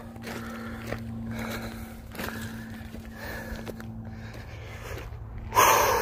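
A man breathing heavily as he hikes up a steep track, with footsteps crunching on loose gravel and rock, and a louder rush of noise near the end.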